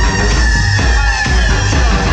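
Loud dance music played by a DJ over a club sound system, with a heavy pulsing bass beat and a high lead tone sliding slowly down in pitch.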